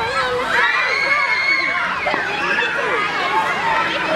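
A crowd of children shouting and shrieking over one another at play. One long, high shriek is held from about half a second in to nearly two seconds.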